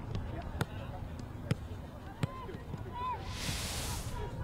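Football ground ambience: faint distant shouts over a low rumble, with a few sharp knocks spread through it. A short burst of hiss comes just before the end.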